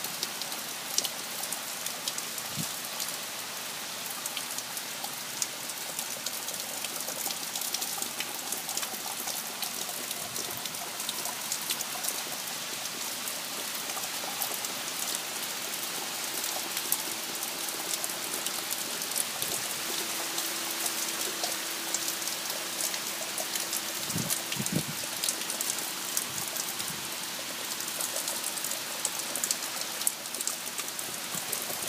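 Heavy tropical-storm rain falling steadily on trees, leaves and a waterlogged lawn, with a dense patter of individual drops.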